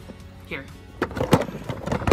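A quick run of knocks and rubbing from a handheld camera being swung about and handled, starting about a second in, over quiet background music.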